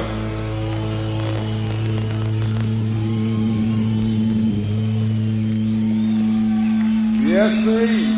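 Live band music: one chord held steadily for several seconds, with a man's voice starting over it near the end.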